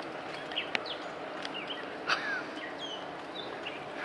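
Wild birds chirping outdoors: several short calls and one falling whistle over a steady background hiss. Two sharp clicks, about a second in and near the middle, stand out as the loudest sounds.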